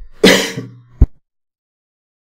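A man clearing his throat with a harsh, cough-like burst. A short voiced tail follows, then a sharp click about a second in.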